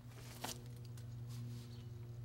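A steady low hum with a single sharp knock about half a second in.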